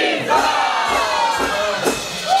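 A congregation shouting and cheering together, many voices at once. It breaks out suddenly between sung lines, the voices sliding down in pitch.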